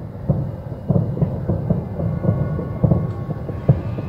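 A dense barrage of distant bangs, many a second, merging into a continuous low rumble, with a few louder bangs standing out about a second in, near three seconds and near the end. They sound like fireworks going off, though none were planned.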